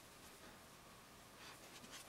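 Near silence, with faint scratchy rubbing of fingers on sculpting clay, a few soft strokes near the end.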